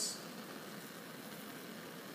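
Steady hiss of a lit Bunsen burner, with saltwater boiling gently in the evaporating basin above it.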